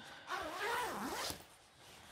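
Zipper on a jacket being pulled in one long stroke lasting about a second, its pitch dipping and rising again as the pull slows and speeds up.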